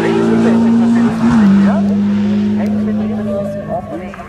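A Seven-style open-wheeled sports car driving by at speed, its engine holding a steady high note that drops in pitch about a second in and then slowly fades as it moves away.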